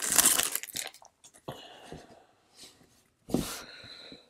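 Foil wrapper of a 2019 Topps Chrome trading-card pack crinkling as it is torn open, loudest in the first second, then quieter rustles of the cards being handled and a short scrape near the end.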